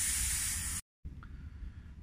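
Air hissing out of a small pneumatic tyre's inner tube through its valve as the tyre is deflated; the loud, even hiss stops abruptly a little under a second in.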